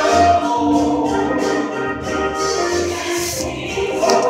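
Choir singing held notes, with low notes pulsing underneath.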